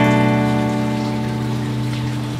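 Slow acoustic guitar music: a chord rings on and slowly fades, with no new note struck.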